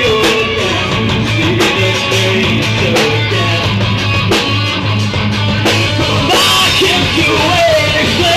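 Live rock band playing loudly: a singer over electric guitars, bass and a drum kit, with regular drum hits.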